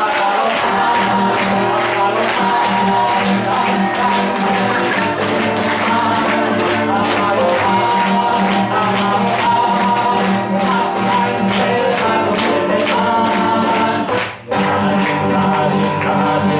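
An acoustic guitar strummed in a steady rhythm with voices singing a song and hand clapping in time. The music breaks off for a moment about fourteen seconds in, then goes on.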